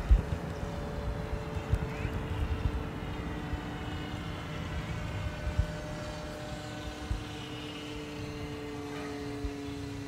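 Electric RC floatplane's motor and propeller in flight overhead, a steady drone that sinks slowly in pitch as it passes.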